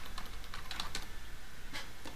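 Computer keyboard typing: a run of separate key clicks as a word is typed out.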